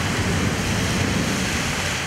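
Heavy rain pouring down on a street: a steady, even rush of noise.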